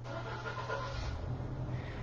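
A man breathing softly in a pause between spoken lines, strongest about a second in, over a steady low hum.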